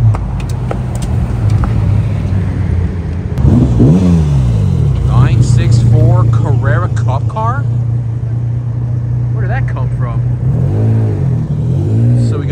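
Sports car engines driving slowly past: a quick rev that rises and falls about four seconds in, then a steady engine note, with another short rev near the end.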